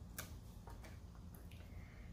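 Faint, soft clicks and light handling of small paper craft pieces, over a low steady hum.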